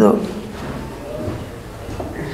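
A pause in a man's talk: his last word dies away at the very start, then low room tone with faint, indistinct background sounds.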